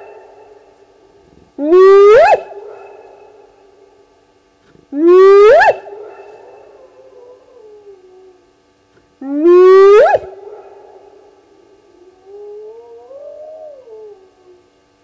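Spotted hyena whooping: three loud whoops a few seconds apart, each rising steeply in pitch and then trailing off, followed near the end by a fainter whoop that rises and falls.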